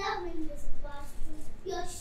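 A child's voice on stage in a sing-song, drawn-out delivery: a held note that slides at the start, then shorter broken phrases.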